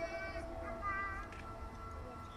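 Live bowed violin music: long, held notes, softer here than just before.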